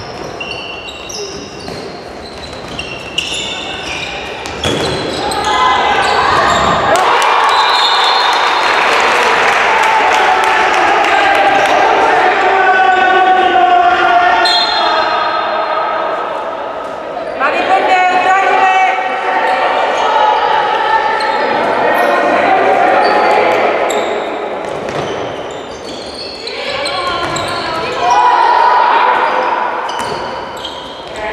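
A handball bouncing on a wooden sports-hall floor amid shouting and calling voices that echo in the hall, growing louder about five seconds in and staying loud most of the way.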